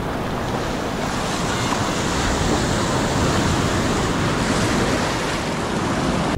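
Sea surf washing and breaking right around a camera held at the water's surface: a steady rushing of water that grows a little louder after about a second.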